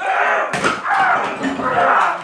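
A man yelling in long, drawn-out cries while smashing a wooden chair, with a thump about half a second in.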